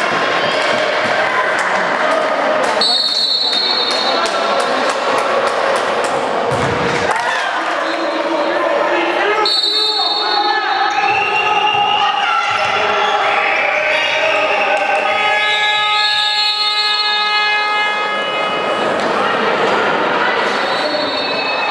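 A handball bouncing repeatedly on a wooden sports-hall floor as players dribble, over voices calling out in the hall.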